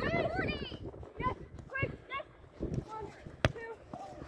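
High-pitched voices of players calling out on the field, and one sharp thud of a soccer ball being kicked about three and a half seconds in.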